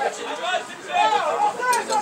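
Voices talking and calling out in the open air, the words not clear enough to make out.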